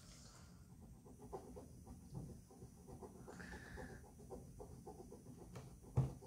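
Faint scratching and tapping of a pen drawing small buttons on a folded sheet of paper, in short irregular strokes, with breathing close by. A sharp tap on the table right at the end.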